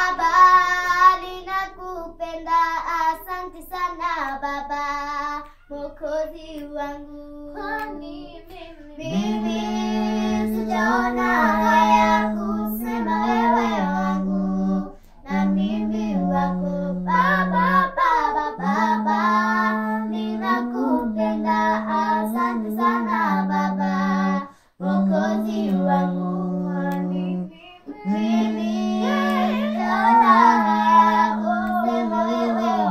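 Two young girls singing together without instruments, with a steady lower note held under the melody from about nine seconds in and broken by a few short pauses.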